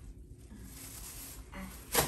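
Quiet room tone with a faint low hum, and a short sharp click just before the end.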